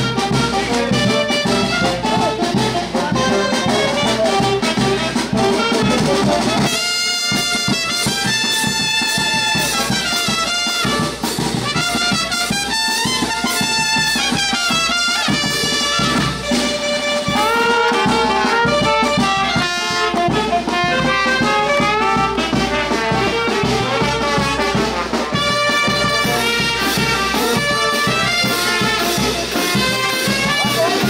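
Brass band playing dance music, with trumpets and trombones carrying the tune over a bass drum. The low end drops out briefly about seven seconds in.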